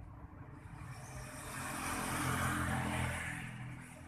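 A motor vehicle passing close by out of sight, its engine rising to a peak about two to three seconds in and then fading.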